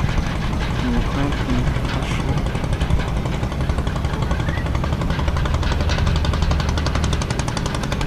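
An engine idling: a steady low rumble with a fast, even pulse.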